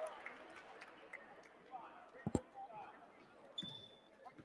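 Faint gymnasium ambience during a stoppage in play: distant voices and crowd murmur, with a basketball bouncing once about halfway through and a brief high tone near the end.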